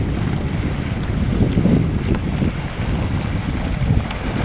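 Wind rumbling steadily on the microphone, over water splashing from kayaks in a canoe polo game.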